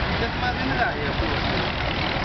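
Vintage tractor engine running steadily, a continuous low rumble, with people talking.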